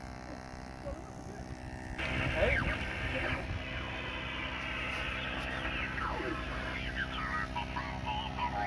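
Amateur HF transceiver's loudspeaker giving thin, narrow-band voices of on-air stations, their pitch sliding as the receiver is tuned. It starts abruptly about two seconds in, after a quieter stretch.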